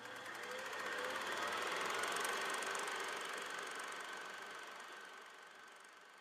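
A sound-effect swell of rushing noise with a fast flutter in it, building for about two seconds and then slowly fading away, as in an animated title sequence.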